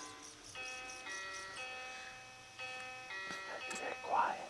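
Crib mobile playing a simple electronic lullaby, faint single chime-like notes changing about twice a second.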